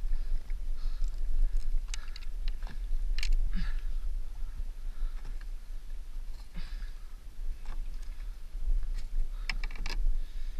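Small waves lapping and splashing against a plastic kayak hull, with a steady low rumble and scattered small clicks and knocks.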